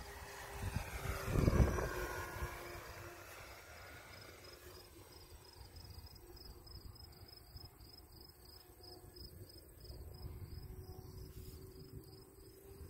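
Radio-controlled P-38 Lightning model airplane making a low pass: its motor sound peaks about a second and a half in and falls in pitch as the plane goes by and fades. Crickets chirp in a steady rhythm, a few chirps a second, through the later part.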